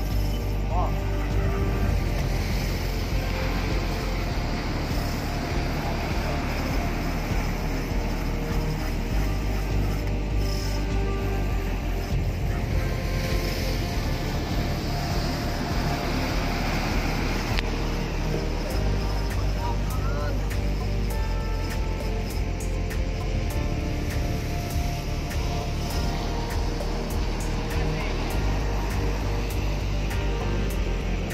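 Background music with sustained bass notes that change every few seconds.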